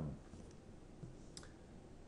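A single faint click in low room noise, about a second and a half in, after the last word of speech trails off.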